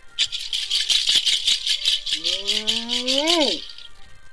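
A diviner's rattle shaken rapidly and evenly. Over the second half a long vocal cry rises slowly in pitch and then falls away sharply.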